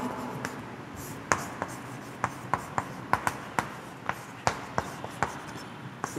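Chalk writing on a blackboard: a string of sharp, irregular taps and short strokes as words are chalked.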